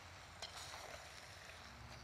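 Faint sizzling of chicken and pumpkin frying in curry paste in a saucepan, with one small click about half a second in.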